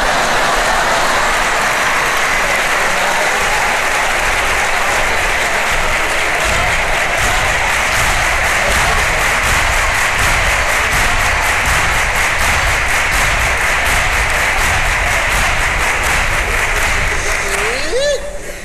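Theatre audience applauding loudly and steadily for a punchline, with a regular beat of claps coming through in the second half.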